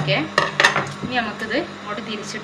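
Large steel tailor's shears snipping through sequined net fabric: a quick run of sharp metallic clicks in the first second, then a few fainter snips and rustles.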